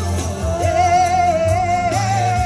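A woman singing into a microphone over a backing track with a heavy bass line, holding one long wavering note from about half a second in.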